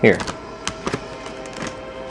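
Plastic-foil Doritos chip bag crinkling, with a few sharp crackles as a hand rummages into it.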